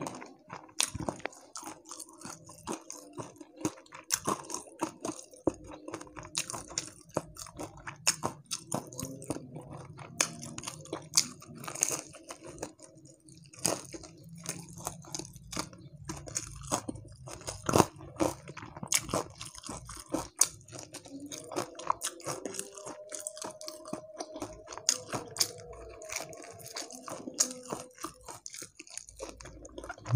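Close-miked eating of crispy deep-fried catfish (lele krispy): irregular crisp crunching bites and wet chewing, with sharp cracks of the fried skin scattered throughout.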